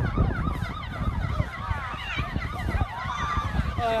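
Several emergency sirens sound together in a fast, repeating rise-and-fall yelp, overlapping at different rates, over a loud low rumble.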